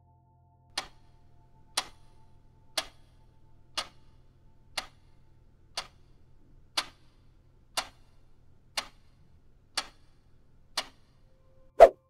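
Countdown timer sound effect: a clock ticking once a second, eleven ticks, marking the time left to answer a quiz question. A single louder hit comes near the end as time runs out.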